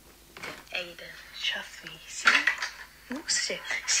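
A recorded voice note playing back through a phone's speaker: faint, tinny speech, quieter than the live voice in the room.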